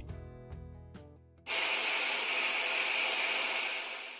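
Background music dies away. About a second and a half in, a sudden steady steam hiss sound effect starts and begins to fade near the end.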